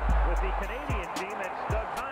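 Speech over music with deep, booming bass thumps: one long low boom at the start that drops away about a second in, and another short one near the end.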